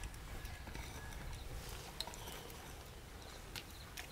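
Soft scraping and a few faint ticks of dry soil and clods being moved while a small hole is dug out with a hand cultivator and by hand.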